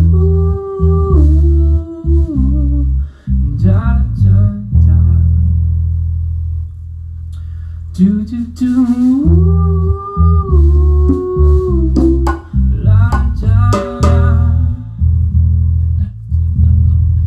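Rock band playing live in a small room: electric guitars, bass and drum kit, with a man singing long held notes over them in two phrases, one at the start and one about halfway through.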